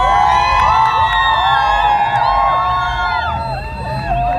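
Crowd of marchers cheering and shouting together, with many voices holding long, high calls at once that die down a little near the end.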